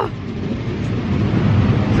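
Bin lorry's engine running close by, a steady low rumble over loud street traffic.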